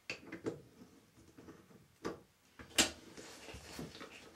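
Scattered clicks and knocks of hands handling drain pipe parts under a sink, the sharpest knock a little under three seconds in, with clothing brushing against the microphone.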